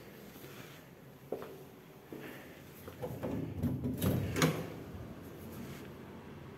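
A glass-panelled door being unlatched and opened. There are a couple of clicks of the handle and latch, then a flurry of knocks and rattles, the sharpest about four and a half seconds in.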